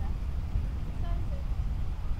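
Wind buffeting the microphone as a steady low rumble, with faint distant voices about a second in.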